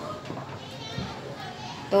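Children's voices in the background, faint and high-pitched, with one soft knock about a second in.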